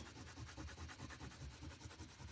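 Oil pastel rubbed across paper in quick back-and-forth colouring strokes, a faint scratchy rubbing.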